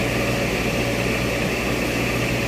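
Steady machine noise: an even, unbroken drone with a low electrical hum beneath it.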